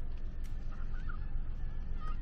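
Steady low rumble of a car driving on the road, heard from inside, with a few faint short high calls or tones about half a second to a second in.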